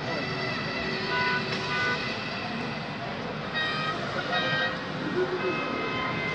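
Busy indoor hall ambience of people's voices, with clusters of short, steady horn-like toots.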